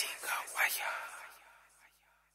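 A faint voice from the song's spoken outro, trailing away and gone by about a second and a half in.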